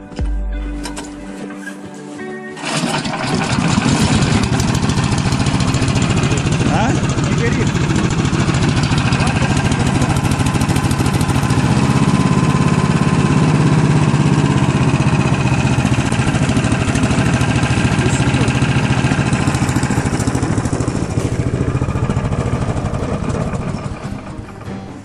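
Small air-cooled single-cylinder four-stroke engine of a tracked motorized towing unit pull-started with its recoil cord, catching about two and a half seconds in. It then runs loud and steady, dropping off a little near the end.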